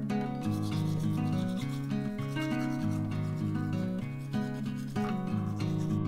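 Toothbrush scrubbing teeth, a scratchy brushing sound, over strummed acoustic guitar music that plays throughout.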